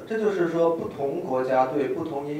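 A man's voice speaking into a microphone, in short broken syllables.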